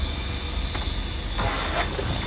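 Handling noise from a phone being carried out of a vehicle through the open door, with faint knocks, over a steady low rumble.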